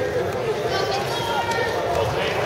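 Spectators' chatter in a gym: many overlapping voices talking and calling out at once, at a steady level.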